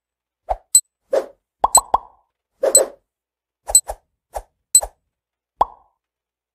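Countdown timer sound effect: an irregular string of short plops and clicks, a few a second, stopping shortly before the end.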